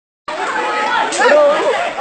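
Many voices of a crowd talking over one another, starting a moment in after brief silence.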